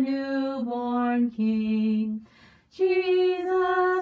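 A single unaccompanied voice singing a Christmas hymn: long held notes stepping down in pitch, a brief pause for breath about halfway, then a higher held note.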